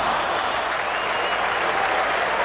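Large stadium crowd cheering and applauding, a steady wash of noise, just after a pass falls incomplete.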